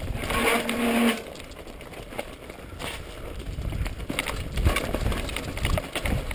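Mountain bike riding down a rocky trail: tyres crunching and clattering over loose rock, with knocks and rattles from the bike over the bumps. A louder stretch with a short pitched tone comes within the first second.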